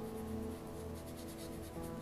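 Quick, light scratching strokes of a fine paintbrush laying oil paint on paper, over slow background music with held chords.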